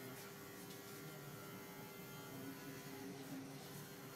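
Faint rustling of fingers rubbing through short hair in a scalp massage, over a steady electrical hum.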